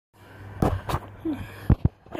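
Two short, sharp breathy sounds from a person, then two low thumps of a phone being handled as it swings round, over a steady low hum.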